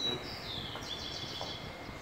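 A bird calling outdoors: a short run of high, downward-sliding whistled notes in the first part, over steady outdoor background noise.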